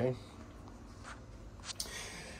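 A spoken "okay", then a quiet small room with a low steady hum and two faint short scratchy noises, one about a second in and one near the end.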